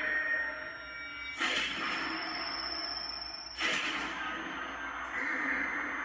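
Tense TV drama soundtrack: a drone of held tones, broken by two sudden loud bursts of noise, about one and a half and three and a half seconds in.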